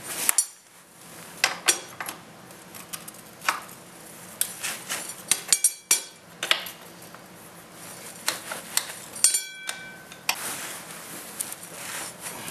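Wrench tightening the rear axle bolts of an ATV: irregular sharp metallic clicks and clinks, with a quick run of clicks about halfway through and a brief metallic ring near the end.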